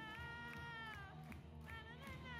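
Live musical theatre music from a curtain-call performance, with a woman's voice singing along close to the microphone, out of tune: one long high note held through the first second, then shorter sung phrases near the end, over the band's bass line.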